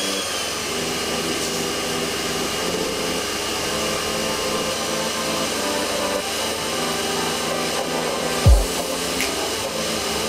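Electric pressure washer spraying the underside of a car: a steady rush of motor and water jet. A brief low thump comes about eight and a half seconds in.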